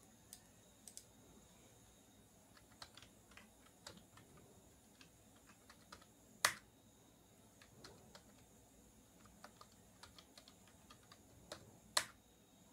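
Faint computer keyboard typing: scattered key clicks, with a louder click about six and a half seconds in and another at the end.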